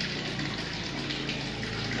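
Steady running water, a continuous even rush with a faint low hum underneath.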